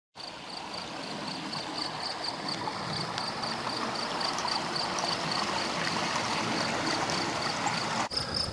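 Steady rush of flowing water, slowly growing louder, with an insect chirping high and evenly about three times a second.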